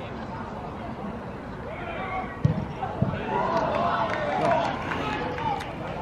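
Two thuds of a football being kicked, about half a second apart midway through, followed by players shouting across the pitch.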